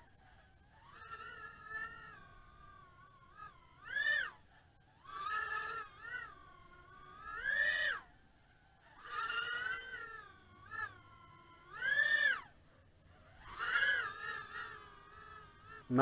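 The brushless motors and props of a GEPRC GEP-HX2 110 mm micro FPV quadcopter whine in bursts every second or two. The pitch swoops up and falls back with each throttle punch as it is flown through flips in acro mode.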